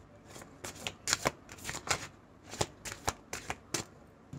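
Tarot cards being shuffled and handled: a quick, irregular series of about a dozen sharp card snaps and flicks.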